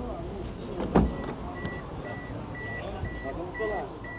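A sharp click about a second in, then a 2005 Toyota Corolla's warning chime beeping evenly, about twice a second, the usual reminder that a door is open with the key in.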